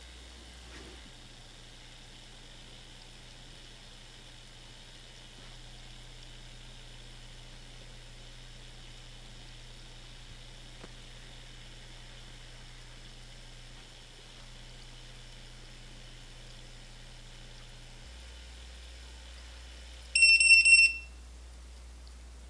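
A PEM hydrogen water bottle's electronic beeper sounding a quick run of high-pitched beeps for about a second near the end, marking the end of its electrolysis cycle. Before it there is only a faint steady hiss.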